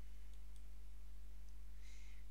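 Two faint computer mouse clicks, about a third of a second in and again about a second and a half in, over a steady low electrical hum.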